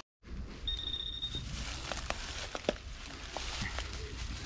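A short, steady high-pitched electronic beep from a metal detector about a second in, signalling a metal target in the dig, with a few light knocks from digging in the soil.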